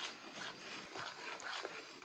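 Faint sounds of a spoon stirring thick plantain batter and palm oil in a plastic bowl, with soft, irregular wet scraping.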